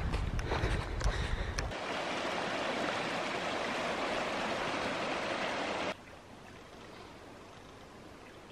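Shallow mountain creek running over stones: a steady rushing that starts about two seconds in and stops abruptly near six seconds, leaving a faint hiss. Before it, a low rumble on the microphone with a few knocks as the hiker walks.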